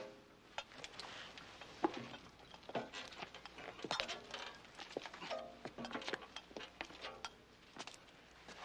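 Irregular scuffs, taps and knocks of a man climbing up onto a tank, his boots and hands on the metal hull, with a few brief murmurs.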